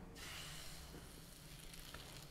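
Faint, steady soft hiss of crepe batter setting on the hot face of a Sunbeam M'sieur Crepe pan dipped into a pan of batter.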